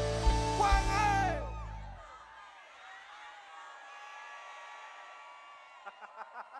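A live song with heavy bass and a singer's voice cuts out about two seconds in. It leaves a quieter crowd singing along and whooping.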